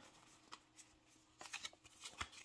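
Faint handling of a small stack of Yu-Gi-Oh trading cards being sorted and squared together: soft ticks and rustles, one about half a second in and a short cluster near the end.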